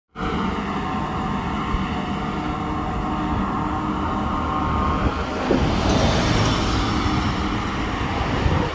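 Wind buffeting the microphone of a mountain bike rolling along an asphalt path, with a steady hum from the tyres on the pavement that fades about halfway through.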